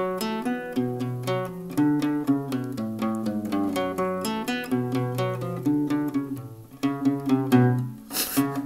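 Acoustic guitar played solo, a run of picked notes moving through a chord pattern, with a brief dip shortly before the end.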